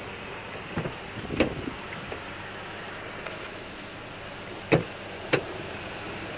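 Door latches and doors of a 2008 Ford Ranger extended cab being opened: two sharp clicks about a second in, then two more near the end, over a steady low background hiss.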